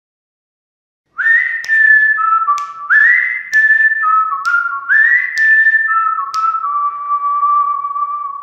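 Channel intro jingle of a whistled tune starting about a second in: a clear melody in three phrases, each sliding up into its first note, ending on a long held note. A sharp click sounds about once a second, six in all.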